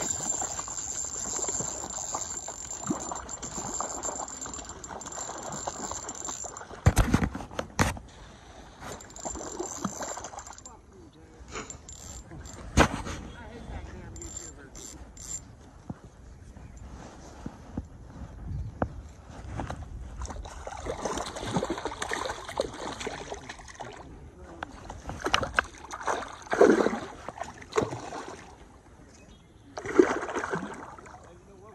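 A hooked rainbow trout splashing and thrashing at the water's surface while a spinning reel is cranked to bring it in, with a couple of sharp knocks from handling the rod.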